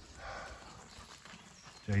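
Rustling in dry leaf litter, loudest briefly just after the start and fainter after that; a voice starts right at the end.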